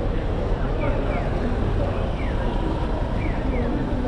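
Crowd chatter and street noise at a busy crossing, with the electronic chirps of a Japanese audible pedestrian signal: short falling bird-like chirps, one or two about every second, sounding while the crossing is open to walkers.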